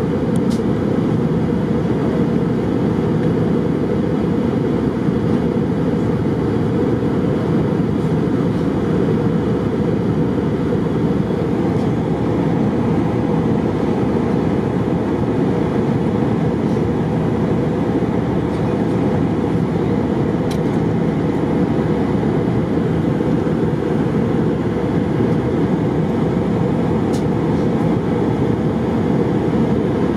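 Steady roar of an Airbus A319 in flight, heard inside the passenger cabin: engine and airflow noise, deep and unchanging.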